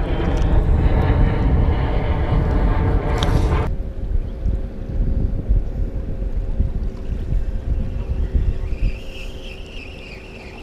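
Wind buffeting the microphone. For the first few seconds a steady droning hum sounds under it and stops abruptly, leaving fainter steady tones.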